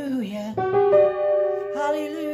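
Piano chord struck about half a second in and left to ring. A woman's voice trails off before it and comes in again near the end.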